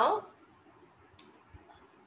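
A single sharp click about a second in, with a much fainter tick just after, over quiet room tone; the tail of a spoken word is heard at the very start.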